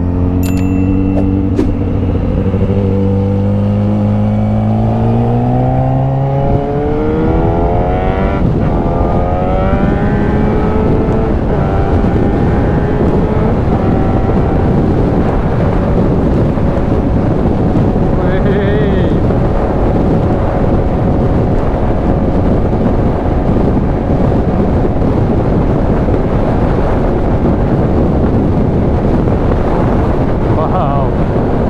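Motorcycle engine accelerating away, its pitch climbing for the first several seconds and again a little later, then running steadily at cruising speed. Heavy wind noise on the microphone builds up and covers much of the engine in the second half.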